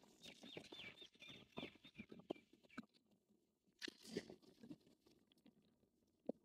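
Near silence, with a faint bird chirping in a quick repeated series over the first two seconds, and a few soft clicks and knocks.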